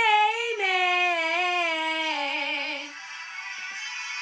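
A woman singing alone, holding one long drawn-out note that steps down in pitch and wavers at its end, breaking off about three seconds in.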